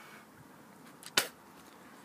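A single sharp click a little over a second in, over quiet room tone.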